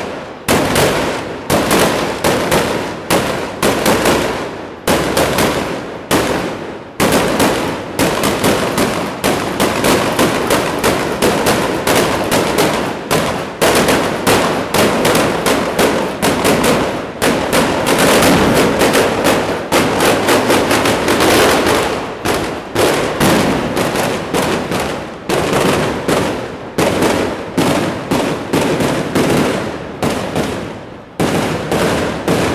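A chain of mascoli, small iron black-powder mortars set on the ground, going off in rapid succession: an uneven string of loud blasts several a second, running almost together in the middle and spacing out a little near the end.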